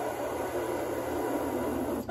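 A steady rushing hiss with no words in it, cutting off abruptly at the end.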